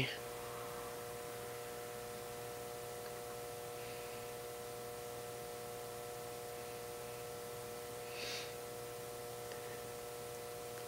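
Faint, steady electrical hum from powered bench electronics, made of several steady mid-range tones. A soft brief puff, like a breath, comes about eight seconds in.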